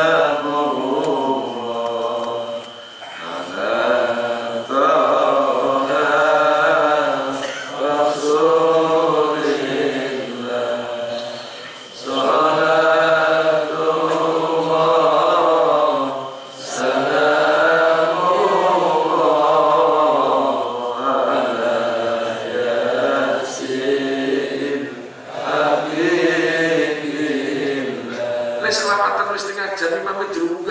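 A man chanting solo in a slow, melodic voice, holding long wavering phrases of several seconds with short breaths between them.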